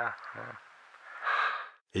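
A last short spoken word, then after a pause a person's short breathy sigh, about one and a half seconds in; music cuts in right at the end.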